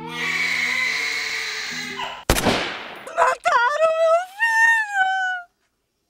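A hiss, then a single gunshot a little over two seconds in, followed by a long, high wailing cry that rises and falls before cutting off suddenly.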